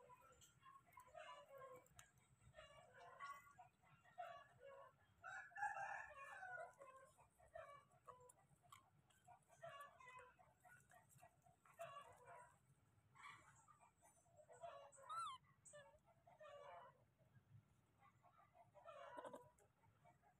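Faint animal calls: short calls repeated every second or two, with one higher, sliding call about fifteen seconds in.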